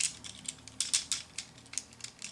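Plastic Transformers Ramjet action figure being handled and adjusted, giving a quick irregular series of small hard clicks and light rattles from its plastic parts and joints.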